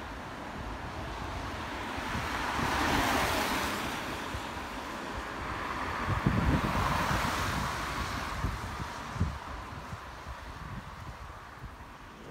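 Road traffic passing on a street: two swells of tyre and engine noise that rise and fade, one about three seconds in and another about seven seconds in, with wind buffeting the microphone.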